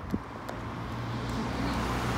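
A car approaching along the road, its engine and tyre noise growing steadily louder, with a brief knock just after the start.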